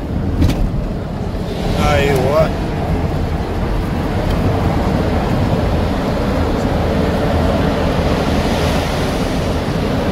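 Steady road and tyre noise of a car driving through a road tunnel, heard from inside the car, with a short burst of voice about two seconds in.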